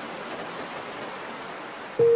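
Steady, even wash of gentle surf breaking on a beach, heard alone in a gap between piano phrases.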